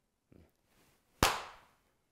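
A single sharp hand clap about a second in, with a short echoing tail, given as the answer to the Zen question "who is it that claps?"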